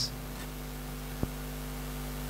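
Steady electrical mains hum with a light hiss, and one small click a little past halfway.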